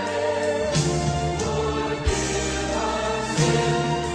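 Choral music: voices singing sustained chords over an instrumental accompaniment with a bass line, the chords changing every second or so.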